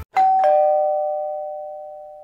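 Two-note descending chime, a doorbell-style ding-dong: a higher note and then a lower one about a third of a second later, both ringing on and fading slowly.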